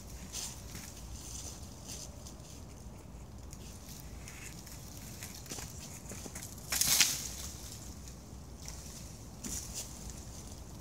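Dry wood and leaves rustling and scraping as a person hangs from and pulls down a fallen dead tree trunk caught among standing trees. There is one loud crackling scrape about seven seconds in.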